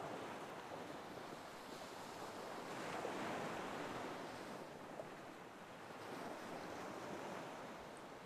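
Soft ocean surf washing on a beach, swelling gently about three seconds in and again near six seconds.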